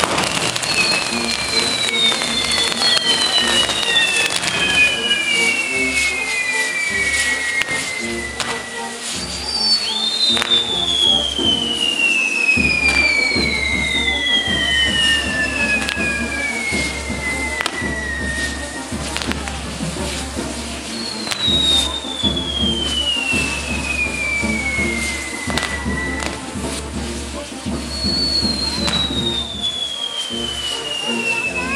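Castillo fireworks burning: whistling fireworks give long whistles, each falling steadily in pitch over several seconds, several overlapping, over continuous crackling and popping. Music plays underneath.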